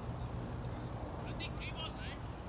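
Steady low outdoor rumble, with a quick run of short high-pitched calls in the second half.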